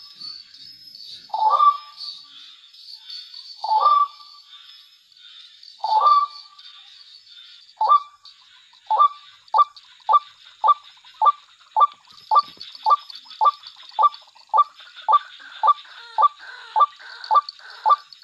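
White-breasted waterhen calling: a loud, downward-sliding note repeated about every two seconds. From about eight seconds in the calls speed up to a steady run of about two a second. A steady high-pitched buzz runs behind the calls.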